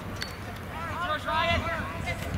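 Raised voices calling out across a lacrosse field, with several high-pitched shouts about a second in, over a low rumble of wind on the microphone.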